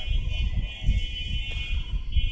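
A steady high-pitched buzzing whine starts suddenly and holds, over a constant low rumble.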